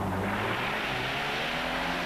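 Ford Sierra rally car passing close by on a gravel stage, its engine running steadily, with a rush of tyre and gravel noise that swells about half a second in as it goes past.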